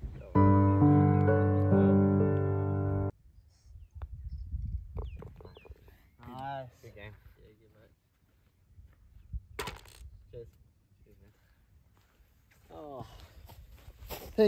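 A short burst of music: one loud held chord lasting about three seconds that cuts off suddenly. After it come faint voices and a single sharp click.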